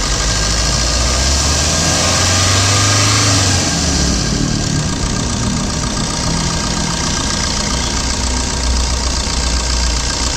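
Maruti Suzuki Swift Dzire ZDI's 1.3-litre DDiS diesel engine idling under the open bonnet, swelling slightly about two to three seconds in before settling back.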